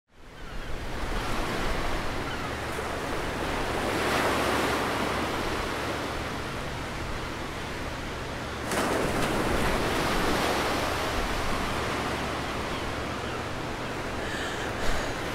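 Ocean surf washing up a beach, fading in from silence at the start and swelling twice, about four seconds in and again near nine seconds.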